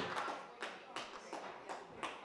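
About five sharp, irregular taps spread over two seconds, with quiet room noise between them.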